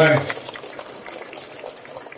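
Audience applauding: an even patter of many hand claps.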